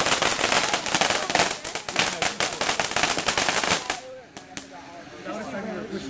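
Crackling ground firework going off as a rapid, dense string of sharp pops that stops suddenly about four seconds in, followed by a couple of last single pops. Voices come in near the end.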